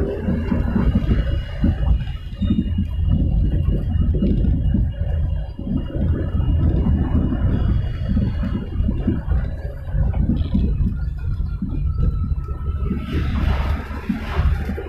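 Car driving, heard from inside the cabin: a steady low rumble of engine and road noise, with a hiss rising near the end.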